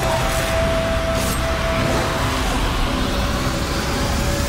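A loud, steady rushing noise of trailer sound effects, like a storm of wind and flying debris, with a thin held tone through the first two seconds.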